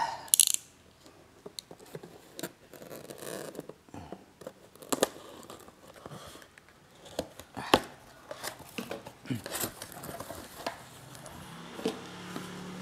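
A utility knife slitting the packing tape on a cardboard box, with scattered clicks and scrapes of the blade and the rustle of the cardboard as the flaps are opened.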